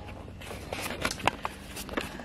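A few light clicks, knocks and rustles of handling noise while the camera is moved.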